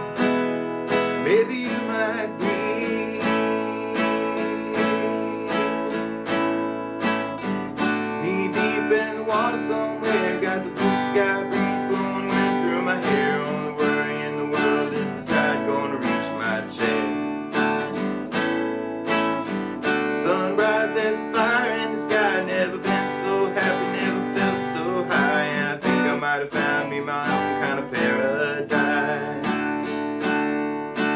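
Steel-string acoustic guitar strummed in a steady rhythm, playing open chords in D through the song's chord changes.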